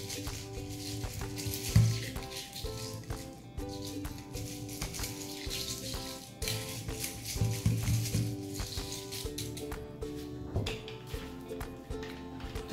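Upbeat ukulele music, with crushed ice rattling and scraping in a highball glass as a long bar spoon stirs it in spells.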